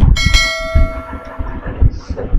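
A bell-chime sound effect from a subscribe-button animation: a sudden strike just after the start, then several ringing tones together that fade out over about a second and a half.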